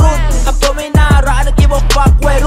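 Thai hip hop track playing loud, with a deep sustained bass, sharp regular drum hits and a vocal line over them. The bass drops out briefly just before a second in, then returns with a kick.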